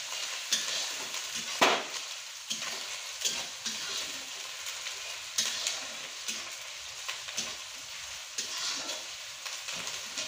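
Onions frying in oil in a black kadai, a steady sizzle, while a metal spatula stirs and scrapes them. The spatula knocks on the pan several times, loudest about one and a half seconds in.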